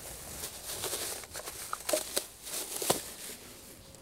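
Black plastic trash bag rustling and crinkling as a tufa planter is worked free of its bag-lined cardboard mold, with a few short knocks from handling the planter between about two and three seconds in.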